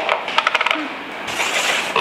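Wooden carrom men and striker clacking against each other and the board: a click at the start, then a quick run of sharp clicks about half a second in, and a brief hiss near the end.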